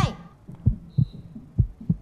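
Heartbeat-style suspense sound effect on the show's soundtrack: a steady run of short, low thumps, about three a second. It marks the tension of the countdown while the couple make their dating decision.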